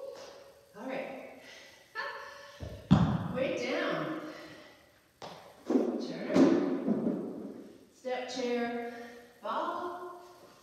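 A woman's short vocal sounds between breaths, with one heavy thud on the rubber gym floor about three seconds in.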